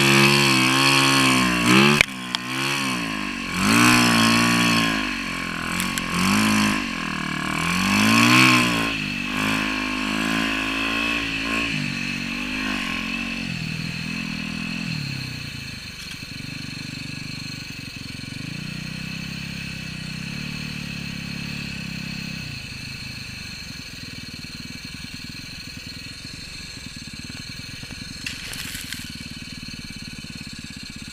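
Yamaha YZ450FX snowbike's single-cylinder four-stroke engine, revved in several rising-and-falling bursts over the first dozen seconds, then settling to a quieter, steady run for the rest.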